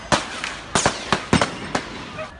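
Gunfire: about seven sharp shots in quick, uneven succession over two seconds.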